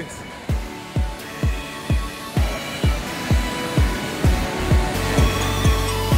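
Background music: a steady electronic beat with deep kick-drum hits about twice a second, and more instruments and a steady bass line filling in as it goes.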